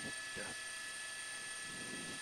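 Faint, steady hiss with a few thin, unchanging tones: the background of a news helicopter's broadcast audio, with a short faint sound about half a second in.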